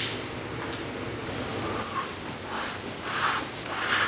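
A sharp click, then several short breathy puffs and sniffs about half a second apart: a person drawing in air as if smoking.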